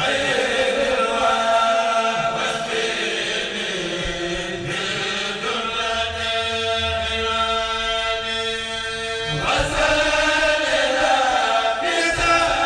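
A kourel, a Senegalese Mouride chanting group, singing a khassida together in chant, with a long held note about halfway through before the melody moves on.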